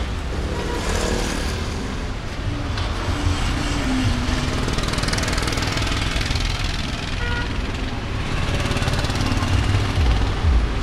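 Steady road traffic noise from motor vehicles passing close by, a continuous low rumble with engine sounds running through it.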